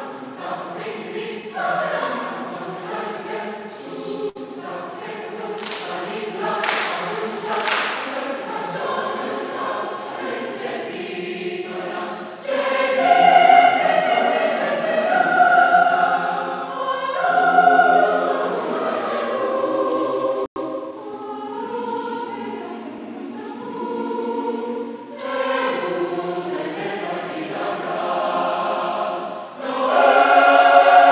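Large mixed choir singing, with the phrases growing louder about twelve seconds in and swelling again near the end.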